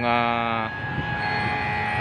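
A man's voice holds one drawn-out word for under a second, then steady outdoor background rumble with no distinct strikes or pops.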